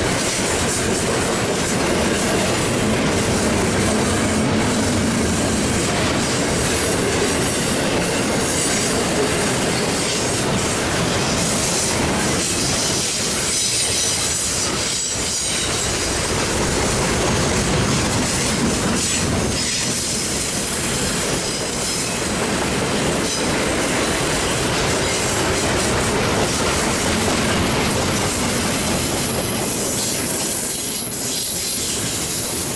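Double-stack intermodal freight train's well cars rolling past close by: steady, loud noise of steel wheels running on the rails.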